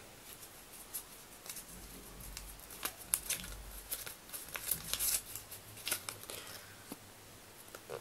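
A small folded slip of notebook paper being unfolded by hand: faint, scattered paper crinkles and rustles.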